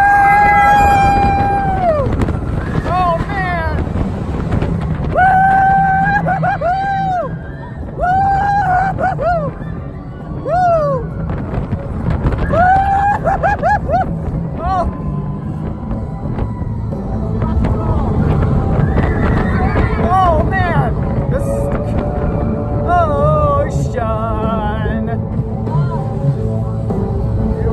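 Riders screaming on Rock 'n' Roller Coaster, an indoor launched roller coaster, over the steady rumble and rushing air of the moving train and the ride's onboard rock music. There is one long scream at the start, then bursts of shorter screams that rise and fall, through the rest of the ride.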